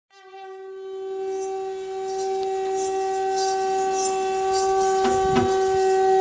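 Sri Lankan perahera procession music: a wind instrument holds one steady, horn-like note without a break. Light high clashes come about every half second, and drum beats come in near the end.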